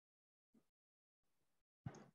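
Near silence in a pause of the spoken meditation, with one brief faint click near the end.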